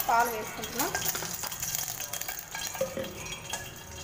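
Faint, crackling sizzle of a little liquid heating in a hot stainless steel pot on a gas burner.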